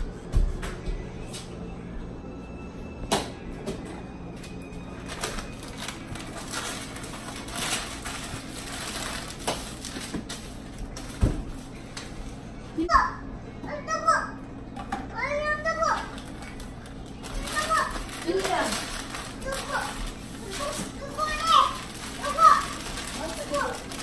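Young children's voices chattering and calling out in a small room, mostly in the second half, after a few sharp knocks and clunks of household things being handled and packed.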